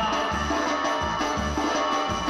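Latin dance music played by a live band through loudspeakers, with a steady recurring bass beat under a full, busy mix of instruments.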